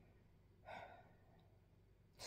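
Near silence, broken by one faint breath from the woman narrating, a little under a second in.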